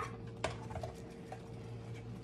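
Faint sizzling and crackling of venison cubes browning in a stainless steel stockpot, with one sharp knock about half a second in and a steady low hum underneath.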